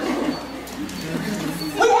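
Soft, low voice sounds, a murmur with a brief hum-like held tone, in a large room, before speech resumes near the end.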